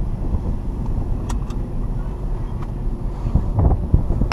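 Steady low rumble of a Volkswagen's engine and tyres heard from inside the cabin while driving slowly, with two light clicks about a second and a half in and a few dull knocks near the end.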